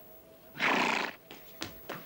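Horse sound effect: one short, loud, breathy blast of a horse about half a second in, then two sharp knocks near the end.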